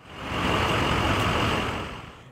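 Steady rushing engine noise from vehicles on an airfield apron, fading in at the start and tapering off near the end.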